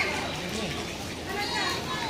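Children's voices calling and chattering from a crowd, with high-pitched shouts picking up again about one and a half seconds in.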